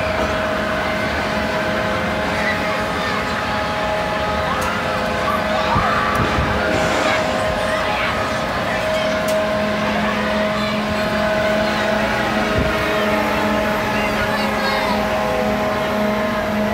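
Amusement ride machinery running with a steady mechanical hum and whine, a lower hum growing louder about ten seconds in, over background voices.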